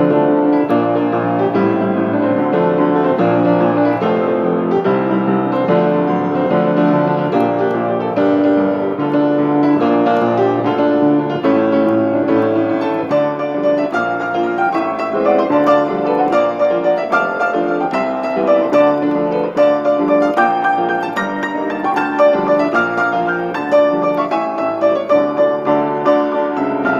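Upright piano played solo: a contemporary piece, with dense, continuous notes that turn into shorter, more separated accented notes about halfway through.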